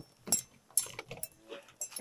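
A few short knocks and slaps as a walleye is handled out of a landing net in a fishing boat.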